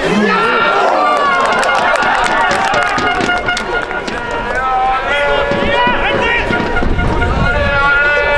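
Several voices shouting and calling across an open football pitch during play, some calls held long, with a few sharp knocks among them.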